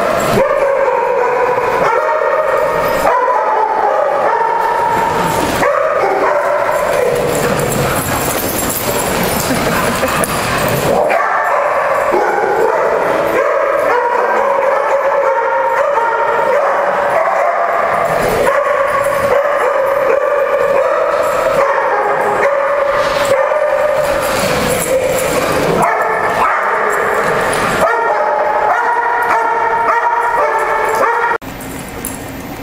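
A group of excited dogs yipping and whining almost without a break, with the occasional bark, in a tiled playroom.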